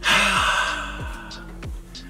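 A man's long, breathy sigh, starting abruptly and fading over about a second and a half, disappointed at a pack's reveal that isn't a hit. Background music with a repeating falling bass note runs underneath.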